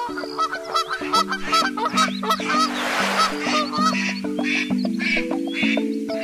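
Cartoon duck quacks, about three a second, over an instrumental children's-song intro, with a short rush of noise midway.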